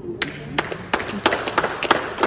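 A small group of people clapping: irregular, uneven hand claps starting a moment in.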